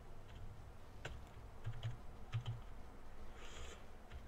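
Computer keyboard keys pressed a few times: sparse, faint typing clicks with short gaps between them.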